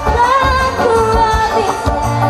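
Dangdut koplo band playing live, with a steady drum beat under a sliding, held melody sung by a woman.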